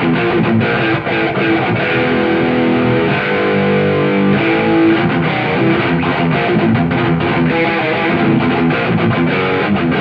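Distorted electric guitar playing a fast picked heavy-metal riff, with a few notes held for about a second near the middle.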